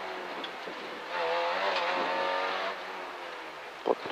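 Peugeot 205 F2000 rally car's engine heard from inside the cabin, running at speed on a stage. The engine note swells for about a second and a half from about a second in, then drops back.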